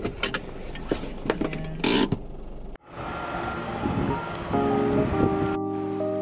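Quiet car-cabin noise with a few small clicks and a short loud rustle about two seconds in. The sound then cuts off abruptly and background music with held notes begins.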